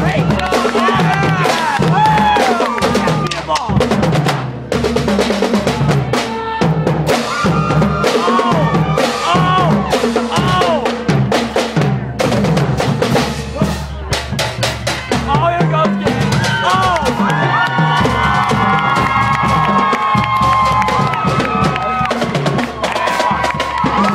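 A marching drumline of snare drums and bass drums playing a fast cadence, with dense rapid strokes and rolls.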